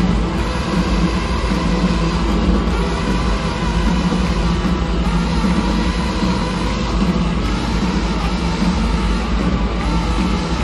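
Live rock band jamming: drums, electric guitars, bass and trombone playing together, recorded from far up in an arena, dense and heavy in the low end.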